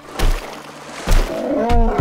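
Two heavy, deep thuds about a second apart from a large dinosaur's footsteps, followed near the end by a short animal growl whose pitch rises and falls.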